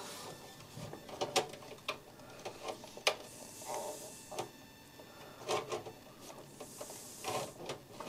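Scattered light clicks and rustling from handling a small plastic cable connector inside a PC case, as the front-panel power switch lead is pushed back onto the motherboard header pins. The crispest click comes about three seconds in.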